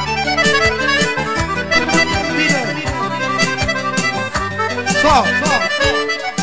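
Manele band playing an instrumental passage: a lead instrument plays quick, ornamented runs with bending notes over a sustained bass line and a steady beat.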